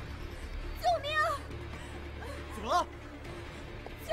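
A woman's high-pitched shouts of "救命!" ("Help!"): a two-syllable cry about a second in and a rising cry near the end, over a steady bed of film score music.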